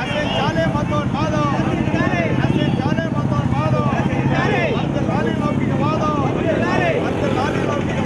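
Several overlapping voices of a street protest group, no single speaker clear. Beneath them a motor vehicle's engine hums steadily, strongest in the middle seconds.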